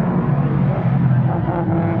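Several race car engines running at speed as the cars pass on a short oval, a loud steady drone whose pitch shifts a little as they lift and accelerate.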